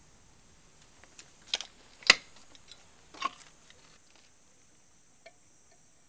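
A few sharp clinks and knocks of a long metal spoon against a dark glazed earthenware crock, the loudest about two seconds in.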